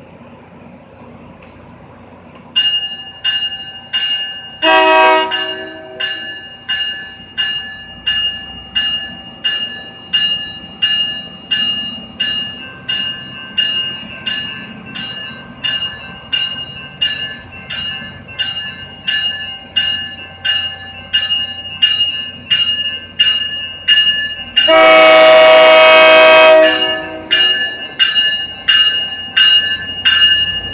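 Tri-Rail BL36PH diesel locomotive arriving at a station platform: its bell starts ringing about two and a half seconds in, a steady ding a little over once a second, with a short horn blast soon after. Near the end a long, loud horn blast sounds over the bell.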